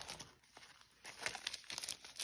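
Faint crinkling of thin clear plastic wrap being gripped and pulled at the edge of a stack of card stock. Mostly quiet at first, then a scatter of small crackles in the second second.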